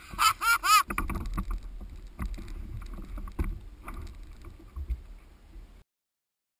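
A man laughing briefly, three short rising-and-falling 'ha's, followed by water and handling sounds on a plastic fishing kayak with a few sharp knocks and low wind rumble on the microphone. The sound cuts off suddenly near the end.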